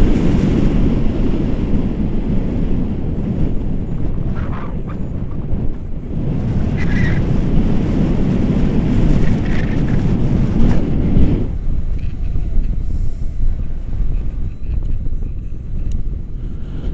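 Wind rushing over and buffeting the microphone of a selfie-stick action camera during a tandem paraglider flight, a steady low rumble. The higher part of the noise drops away about eleven seconds in.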